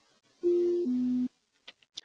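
Garmin GFC 600 autopilot disconnect aural alert: a two-note falling tone, a higher note then a lower one, sounding once. It signals a manual autopilot disengagement.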